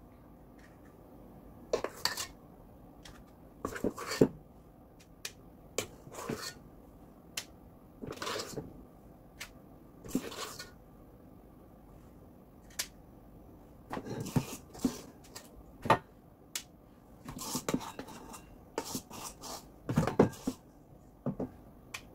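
Metal spoons clinking and scraping against a metal mixing bowl and each other as thick cake batter is scooped out and spooned into cases. The clinks come irregularly, a few seconds apart at first and thicker in the second half.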